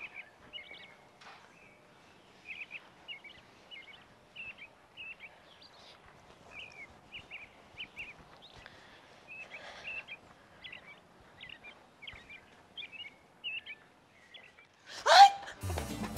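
Birds chirping: short, high chirps repeating about once or twice a second. Near the end a loud sweeping sound rises and falls, and music starts.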